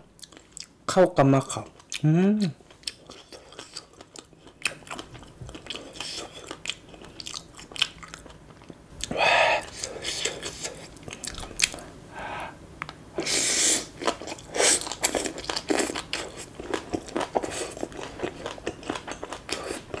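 Close-miked chewing of shredded green papaya salad (som tam): a run of small wet clicks and crackles, with a few louder crunchy bites about nine and thirteen seconds in.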